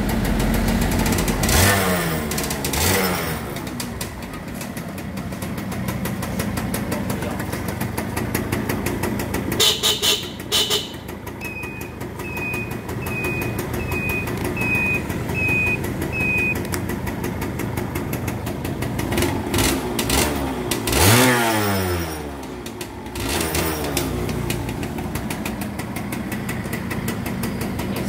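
Suzuki Satria motorcycle engine running at idle, with a rev dying away about two seconds in and another rev climbing and falling back about twenty seconds in. Between about 11 and 16 seconds a run of about eight short, evenly spaced high beeps sounds over the engine.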